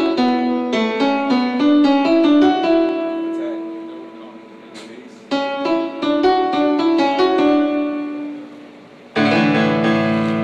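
Piano-style keyboard sound from Ableton Live played over speakers: a phrase of quick stepping notes that dies away, then the same kind of phrase again. About a second before the end a louder, fuller sustained chord cuts in suddenly.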